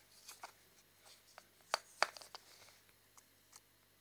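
Fingers handling a small white plastic USB card reader: scattered light plastic clicks and rubbing, with the two loudest clicks about halfway through.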